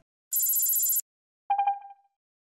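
Notimex closing audio-logo sting: a bright, high shimmering electronic burst lasting under a second, then three quick pitched beeps, the last one ringing out briefly.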